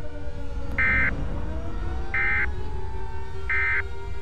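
Emergency Alert System end-of-message data tones: three short, identical digital warbling bursts about a second apart, the signal that closes an EAS activation. Under them runs a bed of slowly sliding, siren-like tones over a low rumble.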